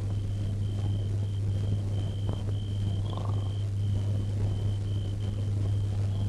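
Steady low electrical hum from an old film soundtrack, with a thin high-pitched tone pulsing on and off a few times a second.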